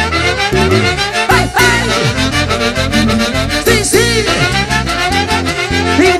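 Peruvian folk band music, an instrumental passage with brass and saxophone lines over a steady drum beat.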